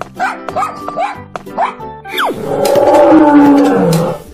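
Children's background music with a cartoon dog-barking sound effect: several short barks in the first half, then a longer, louder animal call that falls in pitch over the last second and a half.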